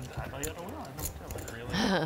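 Quiet talk at the table with light clicking of clay poker chips being handled.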